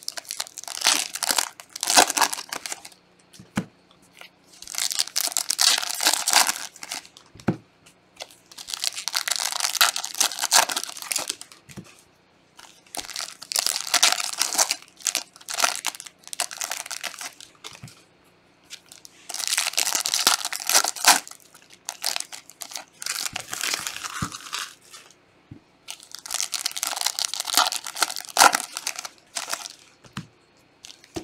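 Foil trading-card pack wrappers being torn open and crinkled by gloved hands, one pack after another: about six bursts of crackling and tearing, each a couple of seconds long, every four to five seconds.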